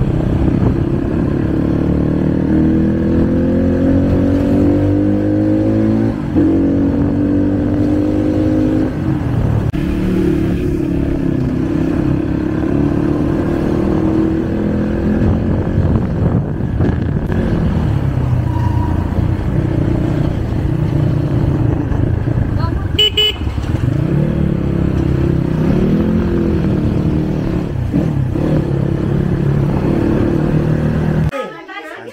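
Suzuki RM250 two-stroke single-cylinder dirt bike being ridden, its engine running continuously with the pitch rising and falling as the throttle is opened and eased. A short horn toot sounds about three-quarters of the way through.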